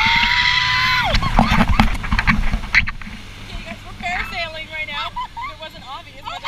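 A woman's long, held scream lasting about a second, sliding down as it ends, then wind buffeting the microphone, with short squeals and laughs near the end, high on a parasail behind a tow boat.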